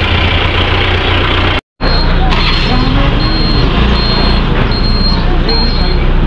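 Street noise with engines running, broken by a brief cut about a second and a half in. After the cut, a high-pitched electronic beep repeats about once every 0.7 seconds over the rumble, with voices.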